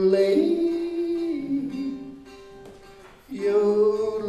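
A man singing long held notes in a yodeling song, the pitch stepping down between notes. The singing fades after about two seconds and comes back strongly near the end.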